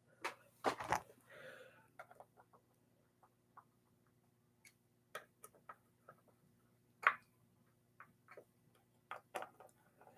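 Small screwdriver and screws clicking and tapping against an electric guitar's control-cavity cover as the cover screws are driven back in: scattered light clicks, a cluster of knocks in the first second and the loudest tap about seven seconds in.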